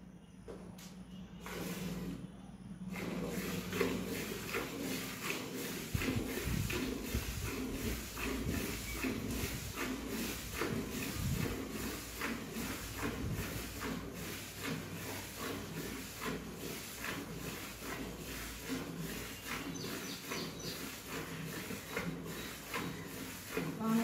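Water buffalo being milked by hand: alternating streams of milk squirt into a steel bucket in a quick, steady rhythm of short hissing spurts, starting a few seconds in.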